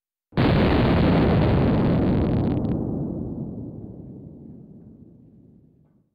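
An explosion blowing apart a hanging violin-shaped stringed instrument: one sudden loud blast about a third of a second in, then a long rumble that fades slowly away over the next five seconds.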